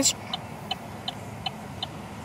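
A car's turn-signal indicator ticking steadily, about three ticks a second, over a low steady hum in the car cabin.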